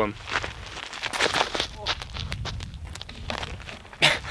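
Footsteps crunching on a dirt and gravel road: many short irregular crunches over a steady low rumble.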